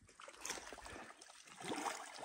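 Faint sloshing of rubber boots wading into shallow pond water, with soft splashes about half a second in and again near the end.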